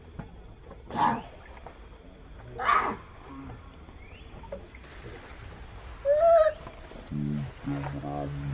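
Water splashing twice as a baby macaque swims, then a short, high monkey squeal that rises and falls; a low, steady voice sounds near the end.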